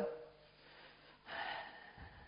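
A person's short, audible intake of breath about a second and a half in, between spoken phrases.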